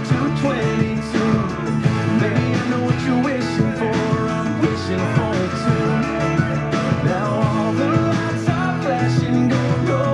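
Country song playing on FM radio, with electric guitar and a full band carrying an instrumental stretch between sung lines.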